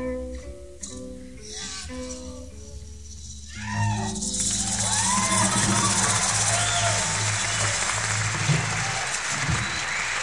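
A live band plays its final few notes. About three and a half seconds in, an audience breaks into cheering and applause with whistles and shouts, louder than the music and continuing to the end.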